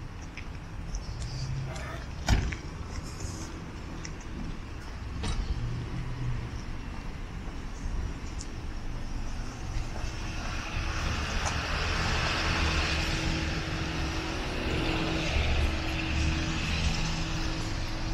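Street traffic: a motor car's engine and tyres grow louder about halfway through and hold, over a steady low hum. A single sharp knock sounds about two seconds in.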